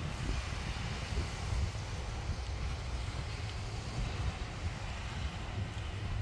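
Steady wind buffeting the microphone in low, flickering gusts, over the even wash of surf breaking along the beach.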